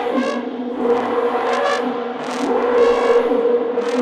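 Two trombones in free improvisation: a steady low drone holds throughout while short, bright brass swells rise and fall over it several times.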